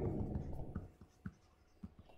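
Stylus writing on a tablet screen: a few faint, short taps and strokes about half a second apart.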